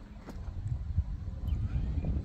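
Wind buffeting the microphone in an uneven low rumble, with a faint rising whine near the end.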